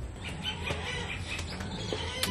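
Birds calling in short chirps and clucks, with a few sharp clicks.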